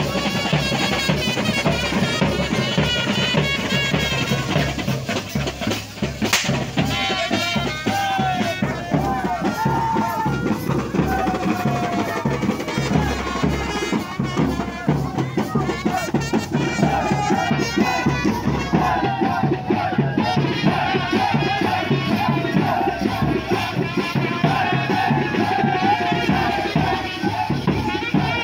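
Band music with drums keeping a steady, dense beat under a melody, and a crowd shouting and cheering over it.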